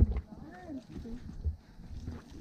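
Low thumps of footsteps on rock and a handheld camera being jostled while climbing a boulder pile, the loudest right at the start and another about one and a half seconds in, with brief voices in the background.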